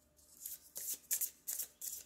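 A deck of oracle cards handled and shuffled by hand: a run of quick, irregular papery card sounds, several a second, starting about half a second in.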